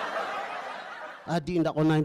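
Audience laughter that fades away over the first second, after which a man starts talking loudly, about a second and a quarter in.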